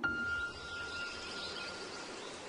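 A quiet pause between music tracks: a faint, single high tone held for almost two seconds over a soft hiss.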